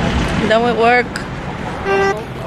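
A car horn gives a short, steady toot near the end, over a background of street traffic. About half a second in there is an earlier wavering, pitched sound, voice-like.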